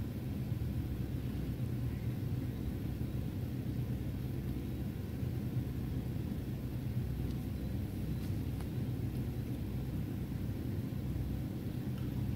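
A steady low background rumble with no distinct events.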